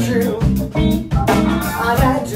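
Live funk band playing an instrumental passage between vocal lines: electric guitar, saxophones and keyboard over a drum kit keeping a steady beat.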